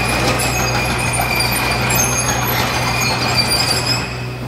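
Bobcat E27z mini excavator travelling on its tracks. The diesel engine runs steadily under a dense clatter and squeak from the tracks and undercarriage, with a thin, high, steady whine over it.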